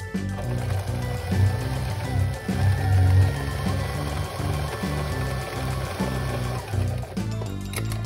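Electric sewing machine running, stitching back and forth through a double-layer patch on denim, under background music with a stepping bass line. The machine sound stops or changes about seven seconds in.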